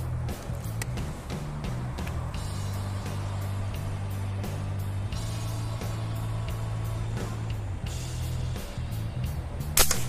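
Background music with a steady bass line. Near the end comes one sharp crack: a shot from a regulated 4.5 mm PCP air rifle, a Bocap Predator Tactical.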